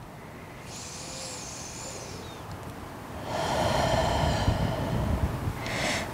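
One full breath cycle from a woman in a forward fold: a soft inhale about a second in, then a longer, louder exhale from about halfway.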